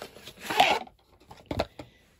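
Handling of a plastic bath-gel bottle: a short rustling scrape about half a second in, then a single sharp click or knock about a second and a half in.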